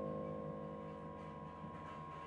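A sustained electronic keyboard chord slowly fading away, with a thin steady high tone held beneath it.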